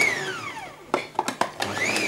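Small electric mini-chopper motor running in two short pulses on a jar of green leaves, its whine rising quickly and then winding down each time. A few light clicks of the jar come between the pulses.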